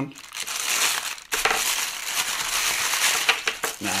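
Plastic courier mailer crinkling and crackling as it is slit with a hobby knife and pulled open, with a short lull a little over a second in.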